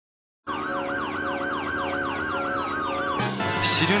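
Police car sirens starting about half a second in: a fast-cycling yelp with a slower rising-and-falling wail over it. They are cut off about three seconds in by music.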